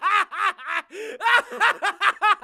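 A man's performed villain laugh: a rapid run of short, pitched "ha" bursts, about five a second, each rising and falling in pitch.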